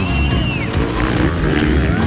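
Dirt bike engines revving, rising and falling in pitch, mixed with loud music that has a steady beat.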